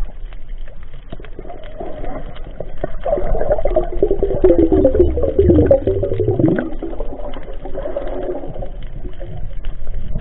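Muffled underwater sound picked up by a camera in the water: scattered clicks and water noise, with a low wavering hoot-like tone swelling in the middle and fading a few seconds later.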